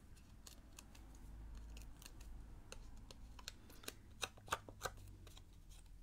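Light, scattered clicks and ticks of hands handling die-cut cardstock pieces and foam dimensionals on a craft desk, with a few sharper clicks about four to five seconds in.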